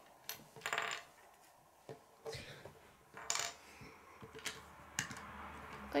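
Small plastic LEGO pieces clicking and clattering as they are picked up and handled on a wooden table: a series of short, light clicks.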